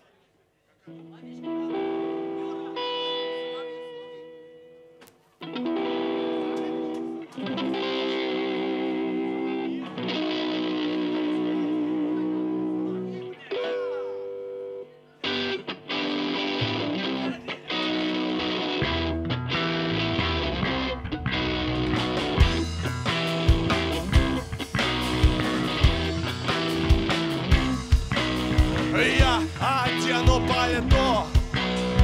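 A live rock band starting a song: after a second of near silence, an electric guitar with effects plays held chords in several separate phrases, then about halfway through the full band comes in with bass and drums, and cymbals join in the last third.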